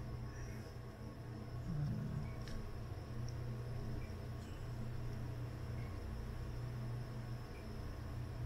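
Quiet room tone with a steady low hum, and faint small clicks and rubs as hands handle a headphone earcup and tuck its wire into place.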